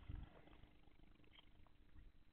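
Near silence: room tone with a faint steady hum and a brief soft low sound right at the start.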